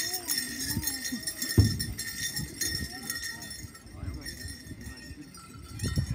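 Low, indistinct voices of an outdoor crowd, with faint jingling of dance bells and a few soft knocks.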